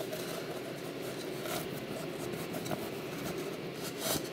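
Faint rustling and scraping of a brown packing sleeve being handled as a drinking horn is slid out of it, with a few small ticks.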